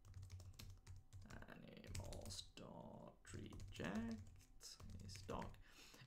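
Quiet typing on a computer keyboard: an irregular run of keystrokes as a line of code is entered.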